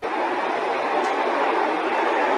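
A steady rushing noise that starts abruptly and holds evenly, with no rhythm or pitch.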